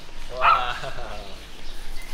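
A small white-and-tan terrier barking, loudest about half a second in.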